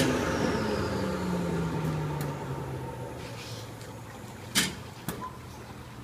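An automated immersion parts washer's motor winding down, its hum falling in pitch and fading over the first few seconds. Two sharp clicks follow near the end.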